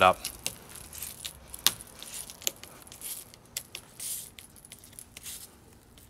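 Scattered light metallic clicks and clinks of a small strap clip being handled and clipped in place, with brief rustles of the canvas draught skirt.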